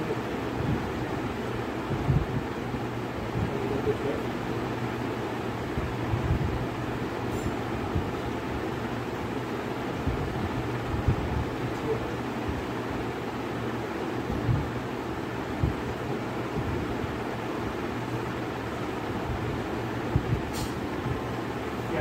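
Steady background noise with a faint low hum, broken by a few short, low thumps.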